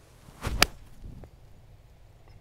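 Golf tee shot with a 9-iron: a short swish of the downswing ending in one sharp, crisp click of the clubface striking the ball, about half a second in.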